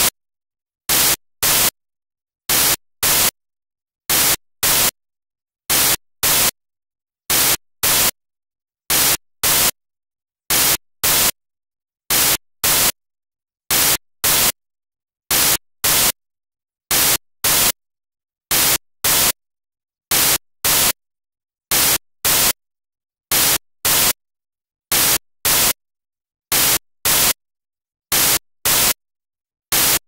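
Short bursts of loud static hiss in pairs about half a second apart, each pair repeating about every 1.6 seconds with dead silence between. This is the sound of a corrupted broadcast feed that has lost its signal.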